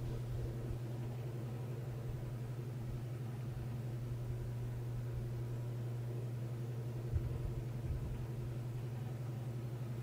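A steady low hum with a few faint soft bumps about seven and eight seconds in.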